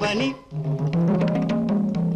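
Indian film-song accompaniment: a sung line ends just after the start, then an instrumental passage of sustained low notes stepping upward, punctuated by sharp hand-drum strokes.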